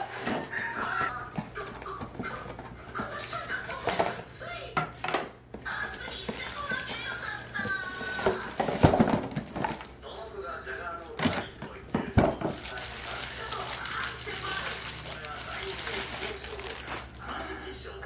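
A cardboard box and its packaging being opened and handled, with rustling and several sharp knocks, the loudest about nine seconds in. A voice talks over it.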